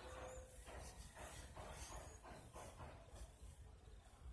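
Faint, soft rhythmic rubbing of a cloth wiping across the skin of the face, a few strokes a second.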